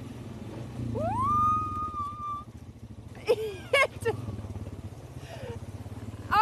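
Quad bike (ATV) engine running steadily at low revs as it is ridden over rough ground. About a second in, a long call rises in pitch and then holds for over a second, and a couple of short voice sounds follow midway.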